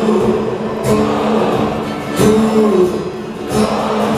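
Live acoustic band music: strummed acoustic guitars with long held notes that bend up and down, and a strong strum about every second and a half.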